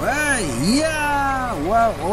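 A man's voice calling out drawn-out exclamations of delight, rising and falling in pitch, over a faint steady hum.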